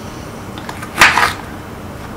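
A kitchen knife slicing through a crisp bitter gourd onto a wooden chopping board: one short crunchy cut about a second in, with a few faint ticks just before it.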